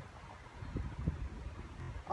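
Low rumble of wind buffeting a phone's microphone, a little stronger about a second in.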